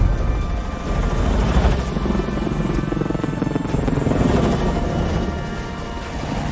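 Helicopters flying, their rotors beating in a fast steady pulse, over background film-score music.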